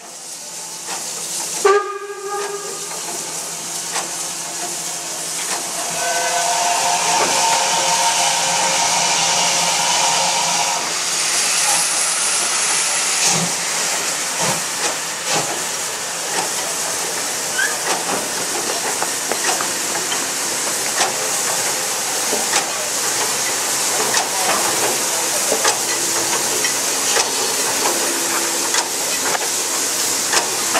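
Class 52 steam locomotive 52 1360-8 with a steady hiss of escaping steam. It sounds its steam whistle: a short toot about two seconds in, then a longer blast of about five seconds starting about six seconds in.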